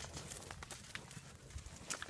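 Calves' hooves stepping on dirt and grass, a few faint, irregular thuds.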